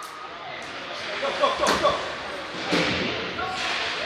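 Ice hockey game sound in an indoor rink: skates scraping on the ice and a few sharp knocks of sticks, puck and boards, with voices in the background.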